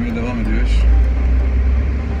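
A deep, steady rumble from a tram running, heard from inside the car, swelling about half a second in. A man's voice is heard briefly at the start.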